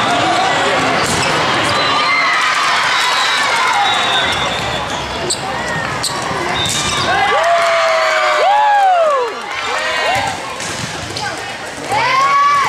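Indoor volleyball rally: the ball is struck a few times and sneakers squeak on the court in a cluster of short squeals near the end, over steady spectator chatter and calls.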